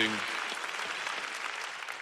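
Audience applauding in a large hall, the applause slowly dying down.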